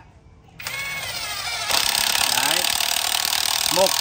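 Cordless brushless impact wrench, fitted with a screwdriver adapter, driving a 10 cm wood screw into a log. About half a second in the motor starts with a whine. From just under two seconds in the impact mechanism hammers rapidly and steadily as the screw bites into the wood.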